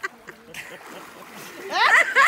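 Pool water splashing and sloshing as one man hoists another up out of the water, then loud, rhythmic cackling laughter breaks out near the end.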